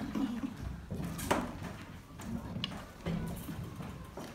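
Light handling noise at a table, with one sharp click about a second in and a softer one later, under faint murmuring voices.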